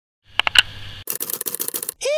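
A few sharp clicks, then about a second in a fast rattle of clicks, roughly a dozen a second, which stops just before the end.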